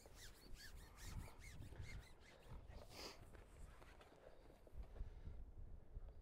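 Near silence: a faint low wind rumble on the microphone, with a few faint, short, high bird chirps in the first two seconds and one brief high note about three seconds in.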